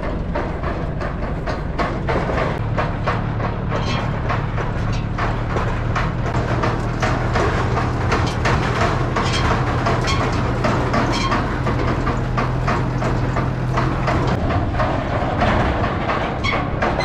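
A tractor engine running steadily while the steel-bar frame of a towed creep feeder rattles and knocks continuously as it is pulled over rough ground.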